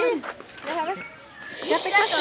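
Unclear voices, a child's among them, calling out briefly, with a short hiss or rustle starting near the end.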